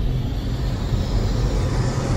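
Logo-sting sound effect: a steady, deep rushing rumble with hiss spread over it, like a wind or fire swell under an animated title.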